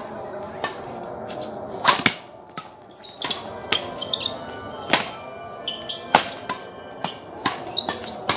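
Badminton rackets striking a shuttlecock in a fast doubles rally: sharp smacks roughly once a second, the loudest a pair about two seconds in and another about six seconds in. A steady high chirring of crickets runs underneath.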